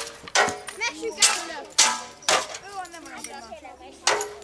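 Medieval mock combat: weapons striking against shields, four sharp clashes that ring briefly, spaced about half a second to a second apart.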